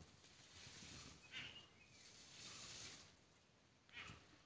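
Near silence, with a few faint, brief rustles and one faint high chirp about a second and a half in.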